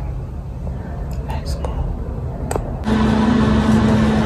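A steady low hum with a few faint clicks, then background music comes in suddenly about three seconds in and is louder.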